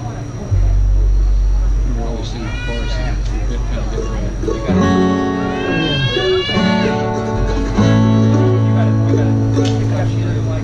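Acoustic string trio playing an instrumental intro: upright double bass notes under acoustic guitar and mandolin, with a higher melody line bending in pitch.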